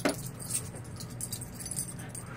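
A pet's collar tags jingling lightly and on and off, starting with a small click.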